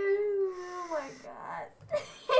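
A girl's high, drawn-out voice, held level for about a second and then sliding down in pitch as it fades.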